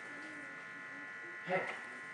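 Steady electrical buzz on the sound system: a few thin, high tones held without change. A short spoken "eh" comes about a second and a half in.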